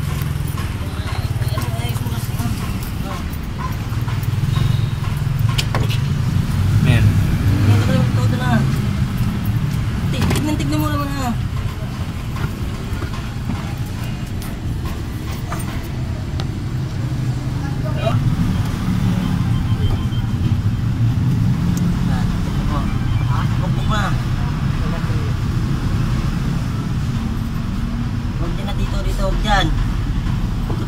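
Busy auto repair shop ambience: a steady low rumble of vehicle noise with background voices and a few sharp knocks of tools on metal.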